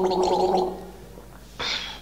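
A man gargling while holding a steady note, the gurgle fading out under a second in; a short breathy hiss follows near the end.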